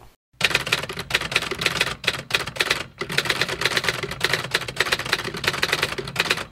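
Typing sound effect: a rapid, steady clatter of keystrokes that starts a moment in, laid under text being typed out on screen.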